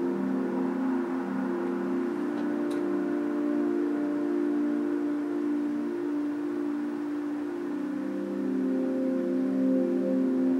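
Ambient drone music: several sustained low tones held together and slowly shifting in pitch.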